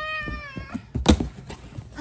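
A small child making a long, meow-like cat call, then a sharp thump and rattle of cardboard about a second in as the box's flap door is pushed open.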